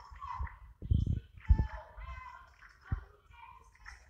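A basketball bouncing on a hardwood gym floor, a few separate dribbles with the clearest about a second in, half a second later and near the end. Short high-pitched sounds come over the bounces in the middle.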